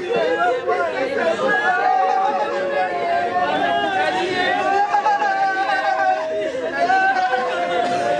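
Several women wailing and crying in mourning, their voices overlapping in long, drawn-out, wavering cries.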